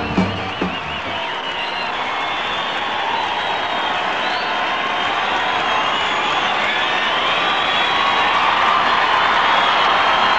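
Concert audience applauding and cheering, with whistles, after the band and singer's last notes end about a second in. The ovation swells steadily.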